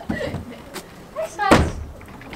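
Horse trailer's rear loading ramp being lowered, landing on the paving with a single heavy thud about one and a half seconds in.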